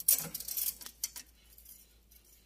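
Steel wire heddles on a dobby loom's shaft bar clinking and jingling against each other and the metal bar as they are slid along by hand: a run of light metallic clicks in the first second or so, then quieter.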